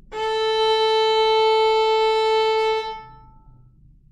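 Violin's open A string bowed with one slow up bow: a single steady sustained note lasting nearly three seconds, stopping cleanly and ringing on briefly as the string dies away.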